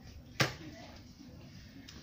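A single sharp click about half a second in: the battery lock of a Lukas SP 333 E2 cordless hydraulic rescue spreader latching as the battery pack is pushed home, the sign that the battery is locked in.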